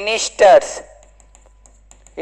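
A man's voice for a moment, then faint, light ticks of a pen tapping and sliding on an interactive touchscreen board as he writes.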